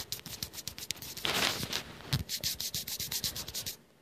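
Fingers rubbing and scratching on a phone's casing right by its microphone, scraping at a fleck of paint on it: a rapid run of scratchy strokes that stops just before the end.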